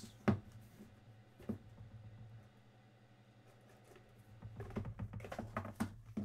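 Hands handling a trading-card hobby box on a table: a sharp click early, another tap about a second and a half in, then a run of small clicks and scuffs near the end as the box is moved and set down, over a faint steady low hum.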